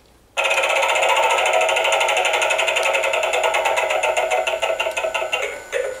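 Gemmy Animated Mystic Wheel toy spinning: a rapid, steady ticking starts suddenly about a third of a second in and runs until just before the toy announces its fortune.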